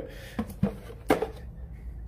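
Handling noise from plastic yard drain basins being moved on a towel, with three light knocks in the first half.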